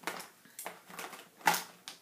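A few light clicks and knocks of markers being handled on a tabletop, the loudest about one and a half seconds in.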